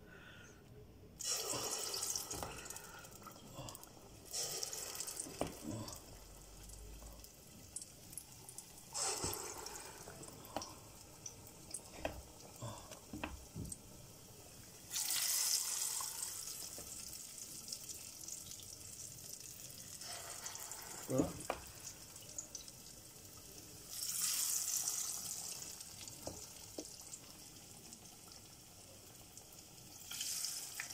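Spoonfuls of akara bean batter dropped into hot deep-frying oil, each setting off a burst of sizzling that fades over a second or two, about five times, with the oil bubbling more quietly in between. A few light clicks come between the drops.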